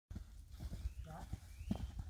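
Young Irish Draught Sport Horse cantering around a sand round pen: a run of dull hoofbeats on the soft footing, one louder thud near the end.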